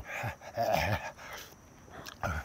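A dog sound effect, a couple of short bursts in the first second, edited in over a man's gagging to stand in for his retching noises.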